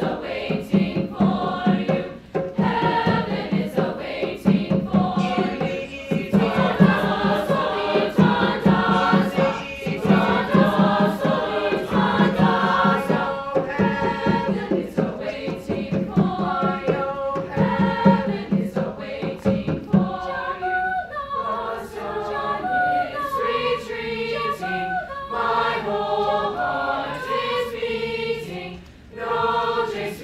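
Mixed choir singing in parts with accompaniment and a steady beat. About twenty seconds in, the low beat drops out and the voices carry on in shifting chords.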